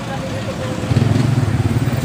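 Motorcycle engine running close by, getting louder about a second in.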